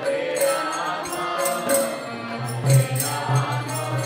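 Kirtan: a hand-pumped harmonium holding sustained chords under a group chanting in unison, with small hand cymbals striking a steady beat about twice a second.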